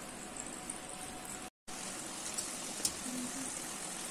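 Stuffed dough pastries (gujiya) deep-frying in hot oil in an iron kadai: a steady sizzle, cut by a brief silent gap about one and a half seconds in.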